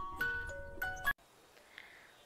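Short intro jingle of struck, chime-like melodic notes stepping between pitches, cutting off abruptly about a second in.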